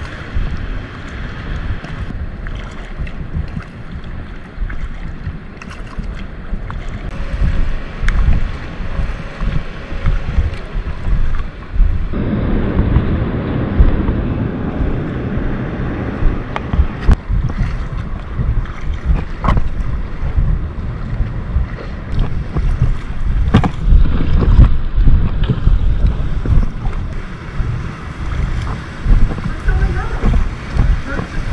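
Wind buffeting the microphone over the water noise of a packraft being paddled on a river, with the double-bladed paddle dipping and splashing. The rushing grows louder and fuller about halfway through, and a few sharp knocks come later.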